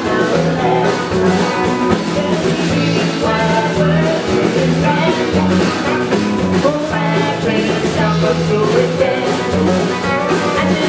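A live band playing a song: acoustic and electric guitars, electric bass and a drum kit, with a woman singing lead.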